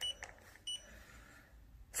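Two short high-pitched beeps, about half a second apart, from a handheld laser distance meter as its button is pressed and it takes a distance measurement.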